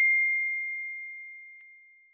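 A single bell-like ding sound effect for the notification-bell click, ringing out as one steady high tone that fades away over about two seconds.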